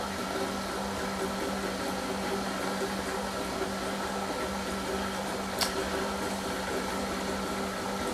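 Sous vide immersion circulator running in a toilet bowl of water: a steady hum of its motor and pump with water churning. One short click comes a little past halfway through.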